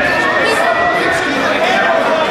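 Crowd chatter in a gymnasium: many people talking at once, with no single voice standing out.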